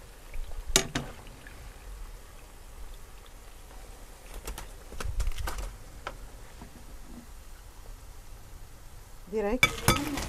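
A metal slotted spoon clinking and knocking against a frying pan and a glass plate as fried pastries are lifted out of hot oil: one knock about a second in, then a cluster of clinks a few seconds later.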